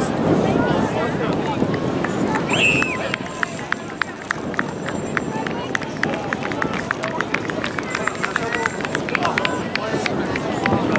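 Voices of players and spectators talking and calling out across a soccer field during play. From about three seconds in, an even run of light clicks, several a second, runs under the voices.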